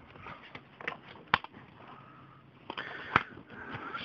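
Plastic CD jewel case being handled and closed: a few sharp clicks and rattles, the loudest about a third of the way in and another near the end.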